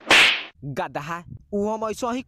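A single loud slap to the face, a sharp hissing smack about half a second long, followed by a voice.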